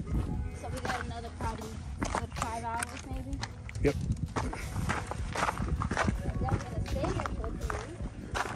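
Footsteps on rocky trail with wind rumbling on the microphone, under indistinct voices and background music.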